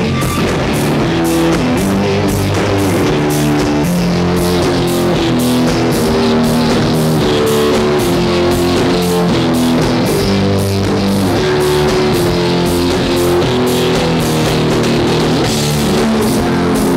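Live rock band playing loudly and steadily: electric guitar, bass guitar and drum kit, with a keyboard.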